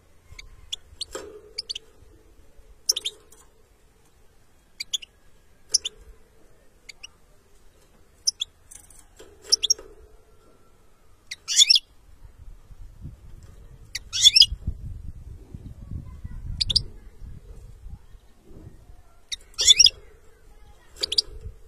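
European goldfinch singing in short twittering bursts of high notes, one every second or two, the loudest phrases coming about halfway through and just before the end. A low rumble sits under the middle of the passage.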